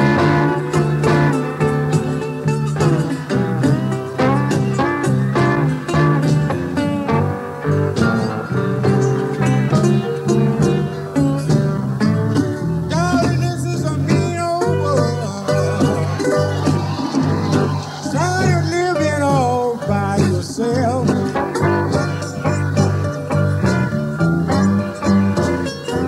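Blues played on guitar, an instrumental stretch with no words sung.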